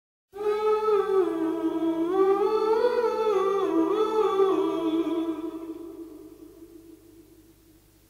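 Music opening with a hummed vocal melody over a sustained held note, fading out over the last few seconds.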